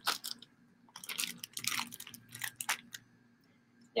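Clear plastic mushroom grow bag crinkling as it is handled, a run of short, faint crackles that stops about three seconds in.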